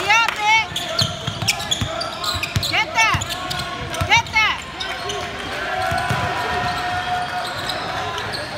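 Basketball game on a hardwood gym floor: sneakers squeaking in short chirps that rise and fall in pitch, in three clusters near the start, about three seconds in and about four seconds in, over a basketball bouncing, with voices echoing in a large hall.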